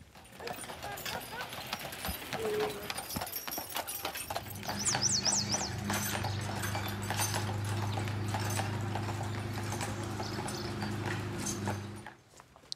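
Horse hooves clip-clopping on a paved street as a horse-drawn carriage passes. A steady low hum sets in about four seconds in, and a brief high chirping comes about five seconds in.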